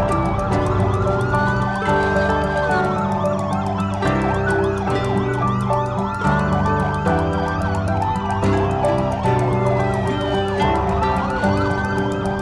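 Police siren wailing, rising and falling in slow cycles about every four seconds, over background music with a steady beat.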